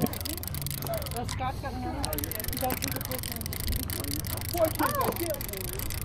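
Indistinct voices talking over the low, steady hum of a fishing boat's motor.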